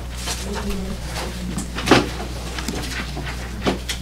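Sheets of paper handled and rustled close to a podium microphone, with sharp crinkles about two seconds in and again near the end, over a steady electrical hum.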